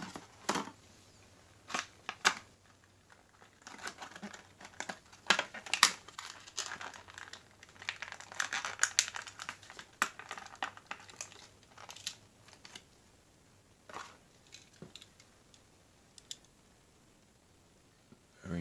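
Clear plastic blister packaging crinkling, crackling and snapping in the hands as a 1:64 diecast car is worked free of it. A few sharp clicks come first, then a busy run of crackles through the middle, then a couple of lone clicks.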